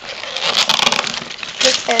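Gift-wrapping paper rustling and crinkling as a wrapped present is handled, with small clicks running through it. A voice comes in near the end.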